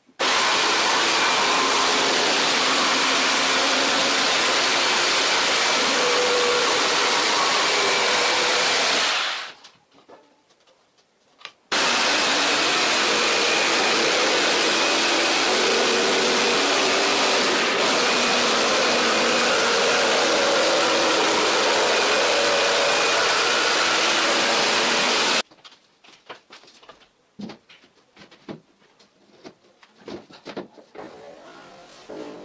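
Electric jigsaw cutting a white-faced board along a straightedge guide. It runs steadily for about nine seconds, stops with the motor winding down, starts again about two seconds later and runs for some fourteen seconds before cutting off. A few light knocks follow near the end.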